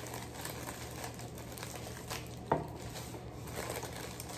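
Clear plastic bag of cake mix crinkling as it is handled and opened, with one short knock about two and a half seconds in.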